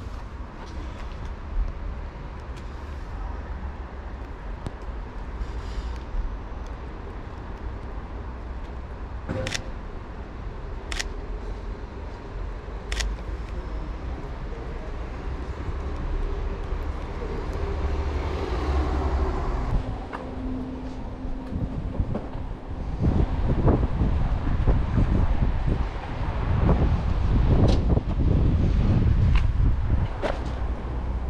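Street ambience with a steady low traffic rumble and a car passing, swelling and fading about two-thirds of the way through. Near the middle come three sharp single clicks a second or two apart, typical of a Sony A7 III camera's shutter firing. Toward the end, heavy irregular low rumbling and thumping from wind and movement on the body-worn microphone is the loudest sound.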